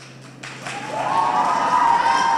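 Audience applause swelling, with a drawn-out cheer held over it from a little after half a second in.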